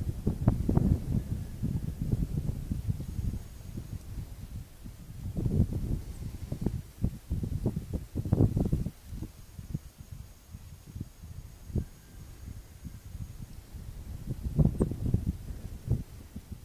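Wind buffeting the microphone: an irregular low rumble that surges in gusts and drops away between them.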